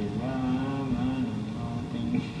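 A voice or instrument holding two long notes of about a second each, slightly wavering in pitch, like a sung line, over a low hum, heard through a television speaker.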